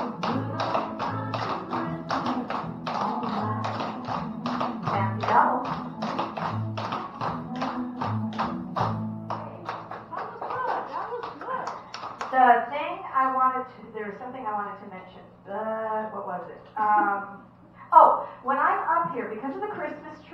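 Clogging taps on a wooden floor: several dancers' shoes strike in quick, rapid clicks over country music. About nine seconds in the music and tapping stop, and women's voices talking follow.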